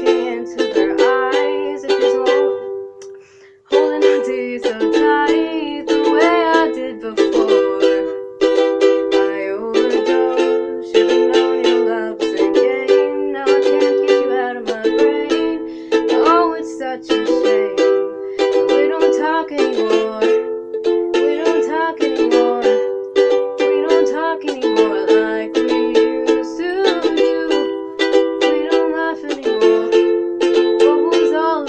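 Ukulele strummed in steady chords, with a short break in the strumming about three and a half seconds in. A girl's singing voice comes and goes over it.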